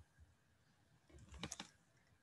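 Near silence, then a few faint clicks at a computer about a second and a half in, as the lesson slide is advanced to the next page.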